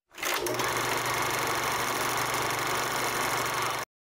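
Television static sound effect: a steady hiss with a low buzz underneath, starting after a brief dropout and cutting off suddenly just before the end.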